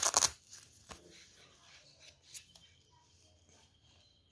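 Nylon trifold wallet being handled and unfolded by hand: a brief crackling rustle at the start, then a few faint taps of fabric and handling.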